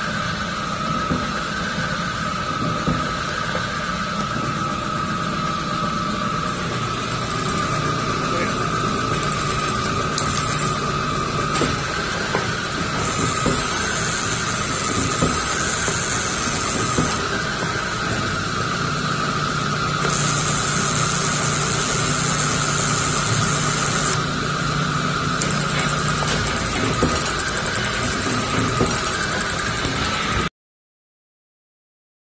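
Niagara mechanical press brake running, its three-phase motor and flywheel giving a steady drone with a constant high whine. A higher hiss joins twice for a few seconds.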